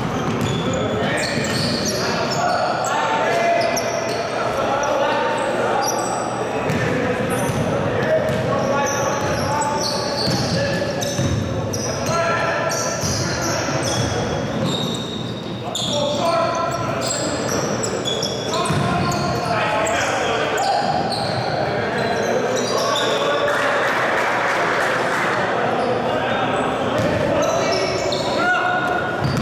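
Basketball dribbling on a hardwood gym floor, with short high sneaker squeaks and players' shouts, all echoing in a large hall.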